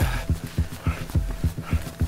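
Running footfalls on a dirt mountain trail: a steady train of low thuds, about four or five a second.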